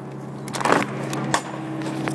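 Steady hum of a trailer refrigeration (reefer) unit's engine running, with a brief rattling scrape about half a second in and a sharp metallic click a little later as the trailer's rear door is worked open.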